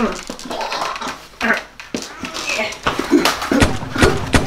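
Two people scuffling, with short strained yelps and grunts. A couple of sharp clicks come near the end.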